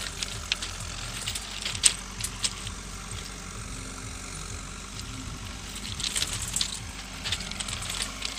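A bicycle moving over railway track ballast: loose stones crunching and rattling under the tyres, with scattered sharp clicks.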